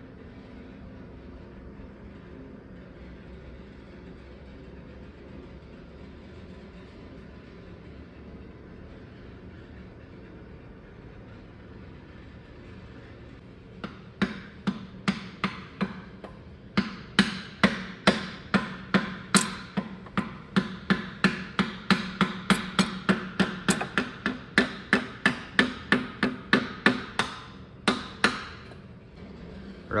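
Steady low shop hum, then, from about halfway in, a run of hammer blows at about two to three a second, driving the rods and pistons out of a Caterpillar 3406E diesel block.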